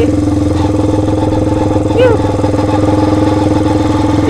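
Kawasaki Binter Merzy (KZ200) single-cylinder four-stroke motorcycle engine running at a steady pace while under way, with no revving. A short voice sound comes about two seconds in.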